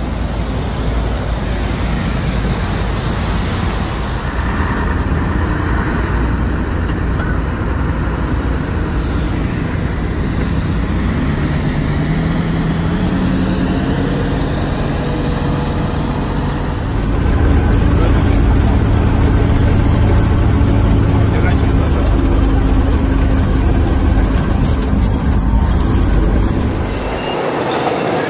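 Heavy snowplow trucks with front blades driving through snow, their engines running with a steady rumble. It gets louder for about ten seconds in the second half as a truck passes close, then falls away near the end.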